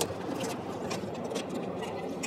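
Steady background noise of a busy exhibition hall, with a few faint clicks and taps close by as a key is worked at the battery compartment of an electric motorcycle.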